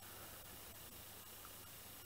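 Near silence: a faint, steady background hiss of room tone.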